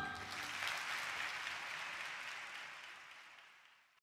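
Audience applauding after the song ends, fading out to silence over about three and a half seconds.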